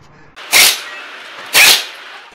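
Pneumatic impact wrench on a car wheel's lug nuts, firing in two short bursts about a second apart.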